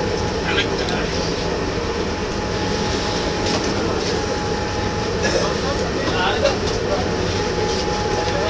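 Ship's onboard machinery running with a steady, loud drone and a thin constant tone above it.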